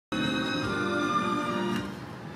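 Music playing on a car radio, heard inside the car's cabin: layered, held melodic notes that start suddenly and fall away near the end.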